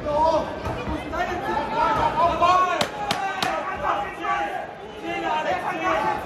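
Shouting voices around a kickboxing ring, with three sharp smacks of blows landing in quick succession about three seconds in.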